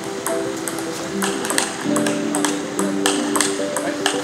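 Table tennis ball hitting the table and bats in a rally: a quick run of sharp ticks, two or three a second, over background music with held tones.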